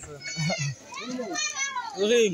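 Voices talking, including high-pitched children's voices calling out.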